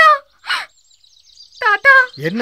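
A woman's short, high-pitched distressed cries, at the start and again near the end, with a sharp breath between them about half a second in.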